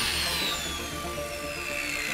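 Handheld power drill whining and slowly winding down, its pitch falling steadily, over background music with a steady low beat.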